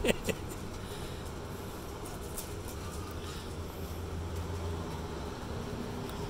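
A steady low outdoor hum with a few faint crunches of a toddler's shoes on gravel, and two short sharp sounds right at the start.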